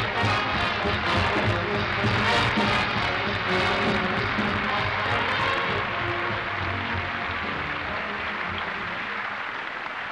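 Orchestra playing an entrance tune over audience applause; the music thins out about six seconds in, while the applause carries on and slowly dies away.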